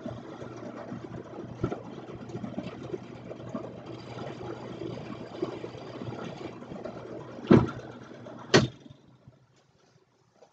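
Bench drill press running and cutting through a flat metal bar, a steady motor hum with gritty cutting noise. Two loud knocks about a second apart near the end, then the running noise stops.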